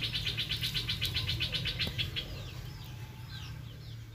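Small birds calling: a rapid, even high trill for about the first two seconds, then a run of short descending chirps, over a steady low hum.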